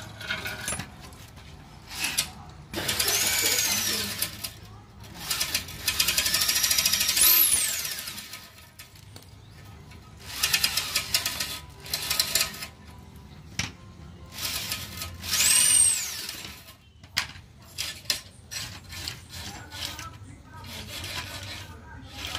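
Steel wire cable scraping back and forth inside a Hero Splendor's exhaust header pipe, scouring out carbon. The scraping comes in several strokes of one to two seconds each, and a few of them carry a high squeal that rises and falls.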